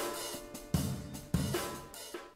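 Playback of a C-major chord progression in a DAW: a held keyboard chord rings out under a programmed drum beat, with a few drum and cymbal hits about two-thirds of a second apart, each dying away.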